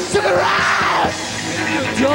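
Live punk band playing, with a yelled vocal line over pounding drums and loud amplified instruments.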